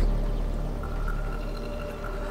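Low, steady rumbling drone with a few faint held tones above it, slowly fading: a sustained background-score underscore.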